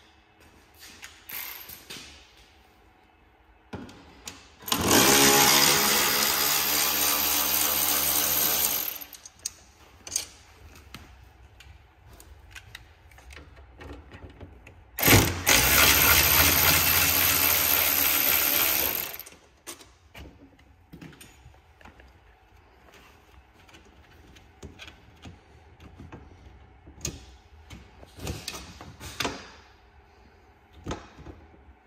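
Handheld cordless drill run twice, each time for about four seconds at a steady pitch, drilling into the snowmobile's tunnel and bumper. Light handling knocks and clicks fall between and after the runs.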